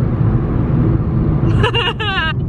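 Steady low rumble inside a car's cabin. Near the end a woman lets out a wavering, falling wail, a mock sob.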